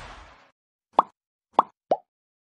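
Sound effects of a subscribe-button animation: a short whoosh as the panel slides in, then three quick cartoon-like pops as the buttons appear, the last one lower in pitch.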